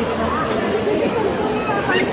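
Indistinct background chatter of several voices, steady throughout, with no clear words.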